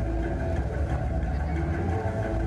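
A stage sound system playing a dark intro track: a steady deep rumble with a few held low tones underneath.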